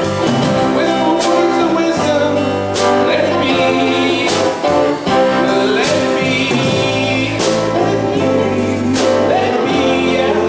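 Live song: a man singing with strummed guitar, backed by a Les Paul-style electric guitar, played steadily with a regular strummed beat.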